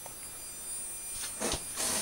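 Quiet room tone: a faint steady hiss with a thin high-pitched whine. Near the end there is a soft breath and a light bump, just before speech resumes.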